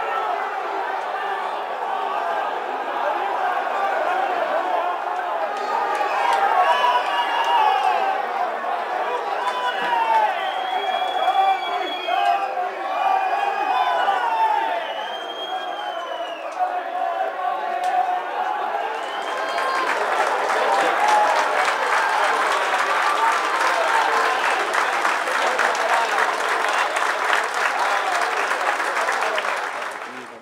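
Football stadium crowd shouting and cheering after a goal, many voices at once with high shouts rising above them. From about twenty seconds in, steady applause joins the voices.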